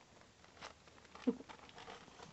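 Zuchon puppies play-fighting, with faint scattered scratching and patter of paws and claws on blanket and newspaper, and one short, soft vocal sound just over a second in.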